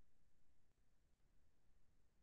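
Near silence: faint low hum and hiss of an open microphone in a video call.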